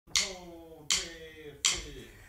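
Three sharp finger snaps, evenly spaced a little under a second apart, opening a song as its beat; each leaves a short ringing tail that falls slightly in pitch.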